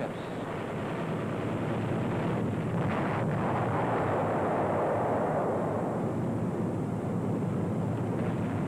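Steady roar of an airplane engine sound effect on an old film soundtrack, swelling louder around the middle.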